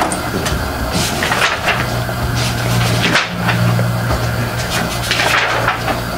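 Paper and small objects being handled on a meeting table near the microphone: rustling and light knocks, over a steady low hum.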